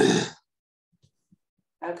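A person coughs once, a short breathy burst right at the start. Near silence follows, broken only by a couple of faint clicks.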